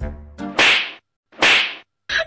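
Two whip-crack sound effects about a second apart, each a short hissing crack, with dead silence between them. A beat of background music cuts off just before the first.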